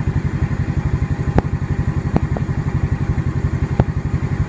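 Motorcycle engine running at low revs with a steady, even pulsing beat, the digital tachometer reading about 1,800 rpm by the end. A few sharp clicks sound over it.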